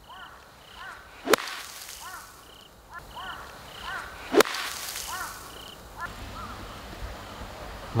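Two sharp strikes of a sand wedge into bunker sand about three seconds apart, each followed by a brief hiss of sand spray. This is a buried-lie ("fried egg") bunker shot played with the clubface closed so the toe cuts into the sand.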